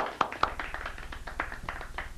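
A small group of people clapping in welcome. The claps are loudest at the start and thin out to scattered claps after about half a second.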